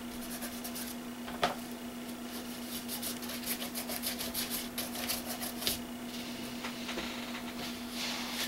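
Paint being rubbed and spread across a paper art-journal page: a run of short scratchy strokes with one sharper tap about a second and a half in, the strokes stopping about six seconds in. A steady low hum runs underneath.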